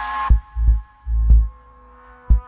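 Deep, loud bass thumps in a heartbeat-like rhythm, three of them and then a short lull near the end, with a held synth tone fading out just after the start.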